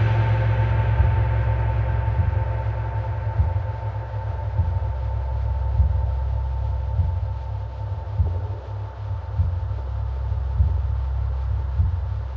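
Ambient meditation music: a deep low drone carrying a 4 Hz binaural beat, with soft low percussion pulsing about once every 1.2 seconds. The ring of a gong-like tone struck just before slowly fades out over the first half.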